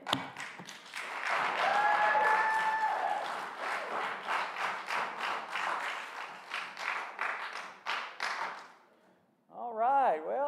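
Church congregation applauding, dense clapping that thins out and stops about nine seconds in, with one voice calling out over it near the start.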